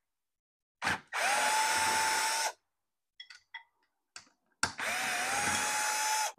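Power drill with a socket extension spinning screws out of a GM SI-series alternator's end frame: two runs of about a second and a half each, the motor's whine rising quickly then holding steady. A few light metallic clicks fall between the runs.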